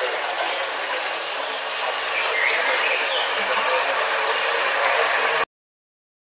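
Outdoor ambience: a steady high hiss with a few faint distant calls, cutting off abruptly to silence about five and a half seconds in.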